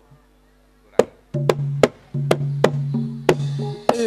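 Live Javanese gamelan-style dance accompaniment starting up about a second in: sharp drum strikes, roughly three a second, over a sustained low note.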